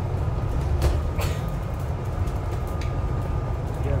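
Interior of a double-deck bus on the move: the engine and drivetrain running with a steady low rumble and a faint steady whine, plus a couple of brief rattles about a second in.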